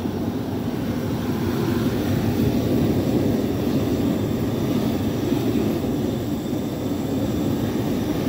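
Lit propane pipe burners in a pig roaster, burning with a steady, even rush of flame.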